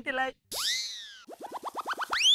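Cartoon-style comedy sound effects: a springy boing-like swoop that shoots up and then slides down, followed by a quick run of rising chirps that come faster and faster.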